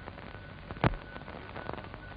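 Surface noise of a worn film soundtrack: a steady hiss with scattered crackles and clicks, and one loud pop a little under a second in, with a faint steady hum beneath.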